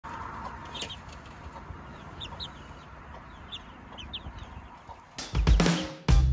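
Chickens in a coop making a few short, high calls over a low background. About five seconds in, loud upbeat music starts.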